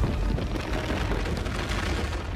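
Film sound effects of a city's ground tearing apart and rising: a continuous, loud deep rumble with crashing and crumbling debris, with orchestral score mixed underneath.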